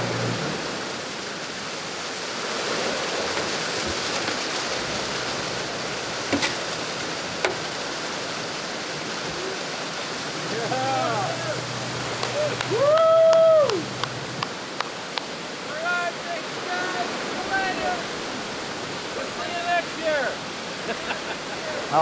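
Steady rush of waterfalls pouring down the sea cliffs and surf breaking against the rocks. In the second half come a series of short pitched calls that rise and fall, the loudest and longest about halfway through.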